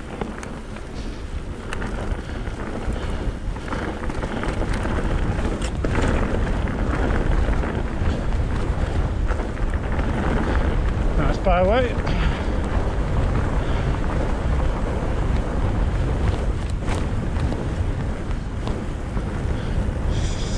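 Wind buffeting a helmet or bar-mounted action camera's microphone, mixed with the rumble of mountain bike tyres rolling over a grassy track. It grows louder over the first several seconds and then stays steady.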